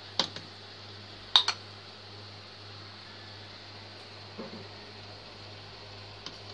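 A metal spoon clinks against a pot while skimming foam off simmering strawberry jam: a light click just after the start and a sharper ringing clink about a second and a half in. A steady low hum runs underneath.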